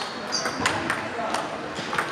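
Table tennis rally: a celluloid-style ball struck by paddles and bouncing on the table, a run of sharp clicks a fraction of a second apart.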